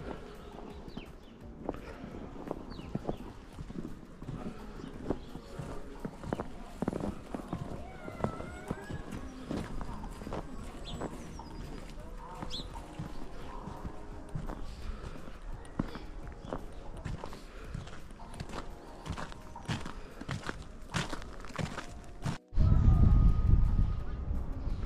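Footsteps crunching on packed snow as someone walks, a steady run of short irregular crunches, with a few short high chirps over them. Near the end, after a brief dropout, a louder low rumble of wind on the microphone takes over.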